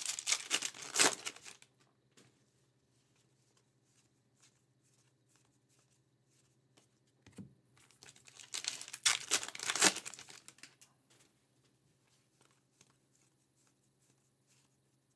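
A trading card pack's wrapper being torn open and crinkled by hand, in two bursts: one in the first second and a half and one about nine seconds in.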